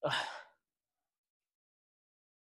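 A man who is crying lets out one short sigh, about half a second long, at the very start.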